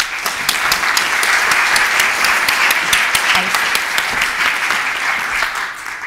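Audience applauding, a dense steady clapping that starts at once and dies away near the end.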